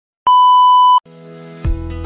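A single steady electronic beep tone lasting about three quarters of a second and cutting off sharply. Background music then fades in, with a beat coming in near the end.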